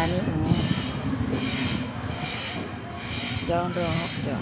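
Steady, rough rumbling noise with a faint regular pulsing, and a voice speaking briefly near the end.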